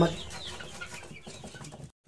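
Young chickens clucking faintly while held in the hand, then a sudden cut to silence just before the end.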